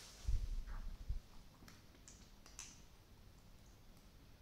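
Low thumps of handling close to the microphone in the first second, then a few faint sharp clicks of a hare's teeth gnawing at a rubber feeding-bottle nipple.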